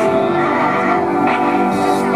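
Live electronic indie-pop song: held synthesizer notes with percussive hits, and a man's voice singing into a handheld microphone.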